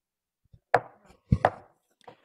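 A gavel rapped three times on a wooden block, the last two raps close together, calling a meeting to order.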